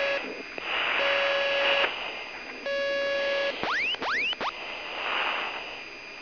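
A steady electronic beep, on for just under a second and repeating about every second and a half, over the hiss of an open radio channel. About four seconds in come three quick rising chirps, then only the hiss. This is ThrustSSC's cockpit radio audio.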